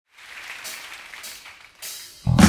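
Audience applause and cheering in a concert hall, fading, with three short, crisp high hits about two-thirds of a second apart.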